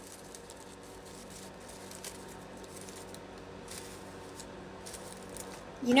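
Faint rustling and crinkling of a folded paper coffee filter being unfolded by hand, over a low steady hum.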